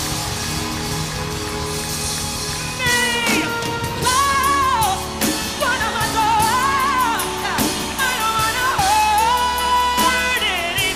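A woman singing solo with a live band: about three seconds of instrumental backing, then her voice comes in with long, belted held notes with vibrato over the accompaniment.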